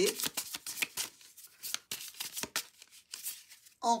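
Tarot cards handled and shuffled by hand: an irregular run of short card clicks and slides as cards are pushed off the deck.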